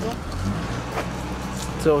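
A car's engine running close by on the street, a low steady hum, with a single knock about a second in.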